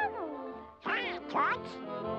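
Donald Duck's quacking cartoon duck voice in three short bursts, sliding up and down in pitch, over background orchestral music.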